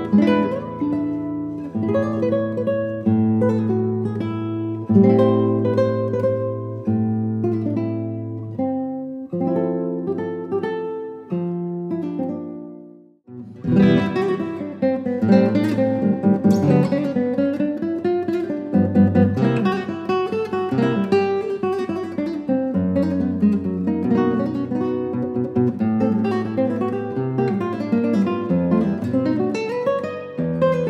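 Solo classical guitar, nylon strings fingerpicked: a slow passage of held notes and chords fades out about 13 seconds in, and a new piece then starts with quicker runs of notes.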